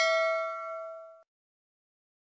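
Subscribe-animation notification bell ding sound effect. A single bright, metallic ring of several tones, struck just before and fading out a little over a second in.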